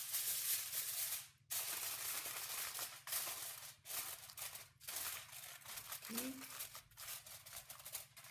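A sheet of aluminium foil crinkling and rustling in irregular bursts as it is spread over a large pot and pressed down around the rim.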